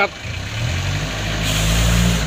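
A 1993 Isuzu Panther's diesel engine being revved: the engine note rises in steps from about half a second in and is loudest near the end.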